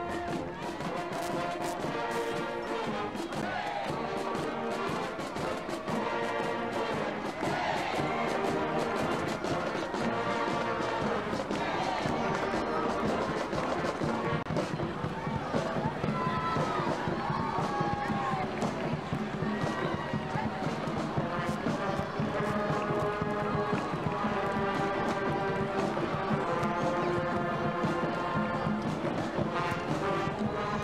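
Marching band playing a tune: trombones, trumpets, saxophones and sousaphone over a steady drumbeat.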